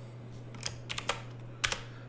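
Computer keyboard keystrokes: a handful of short, scattered clicks as a short prompt is typed and sent, over a faint steady low hum.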